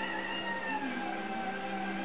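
A dog whining: one long, drawn-out whine that slowly falls in pitch.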